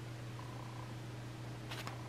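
A steady low hum, with a brief soft rustle near the end.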